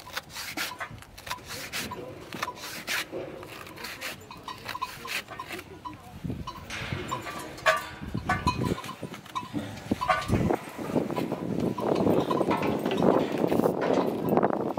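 Irregular knocks, clanks and rattles from a bull-riding bucking chute as a rider sets his grip in the bull rope on a bull, with voices growing in the last few seconds.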